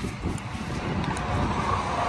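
Wind buffeting the microphone: an uneven low rumble with no steady tone.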